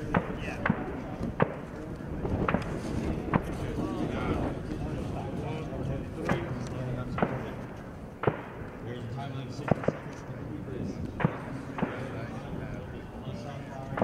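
Sharp gunshot cracks from elsewhere on the range, about a dozen at uneven intervals roughly a second apart, over murmuring voices.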